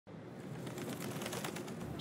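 Faint pigeons cooing.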